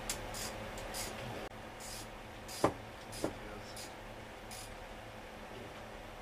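Ratchet wrench with a deep-well socket backing the nut off an alternator mounting bolt: short scratchy clicking bursts every half second or so. Two sharper metal clinks come about two and a half and three seconds in, the first the loudest.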